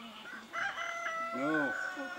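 A rooster crowing: one long call beginning about half a second in.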